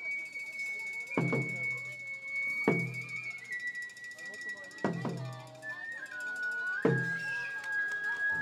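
Matsuri-bayashi festival music: a bamboo flute holds long high notes that step down in pitch, over slow single strokes of a large barrel drum about every two seconds.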